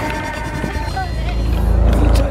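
Street parade din: music from the procession mixed with crowd voices, and a deep rumble that swells near the end.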